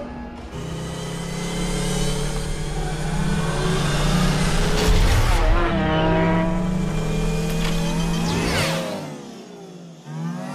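Designed engine sound effects of futuristic light cycles racing: a steady electronic hum with whines gliding up and down, with music underneath. The loudest moment is a deep hit about five seconds in, and one cycle sweeps past about eight and a half seconds in, after which it goes quieter.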